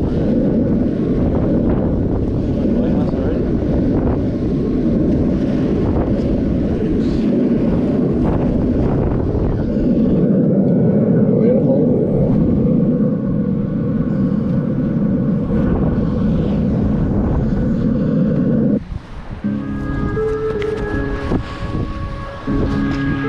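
Wind buffeting the camera's microphone, a loud, steady low rumble, which cuts off suddenly about nineteen seconds in and gives way to music.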